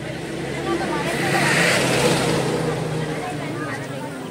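A motor vehicle passing close by: its noise swells to a peak about halfway through and fades, over the chatter of a crowd.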